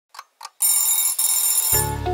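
Alarm clock sound effect: two quick ticks, then a high bell ringing for about a second, with a brief break partway through. Near the end it gives way to intro music with a steady bass.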